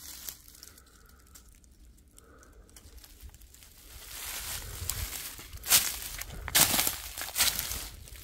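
Footsteps crunching through dry fallen leaves and pine needles. It is quiet at first, then rustling starts about halfway through, with a few louder crunches near the end.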